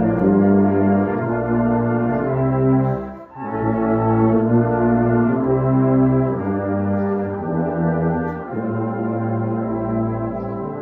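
A tuba playing a slow melody of held notes, with a short break for a breath a little over three seconds in and another shorter one about eight and a half seconds in.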